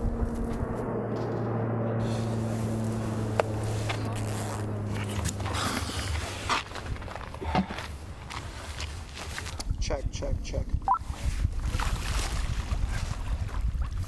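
An airplane flying overhead: a steady low hum that fades after about five seconds. It is followed by scattered knocks and rustles.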